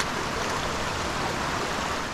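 Small creek running over rocks: a steady rush of flowing water.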